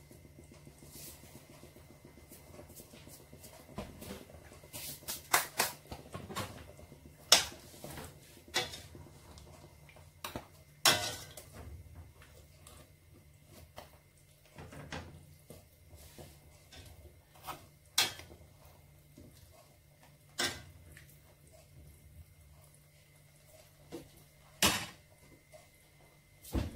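Metal spoon clinking and knocking against a stainless steel cooking pot as soup is stirred: single sharp clinks every second or few, over a faint steady hum.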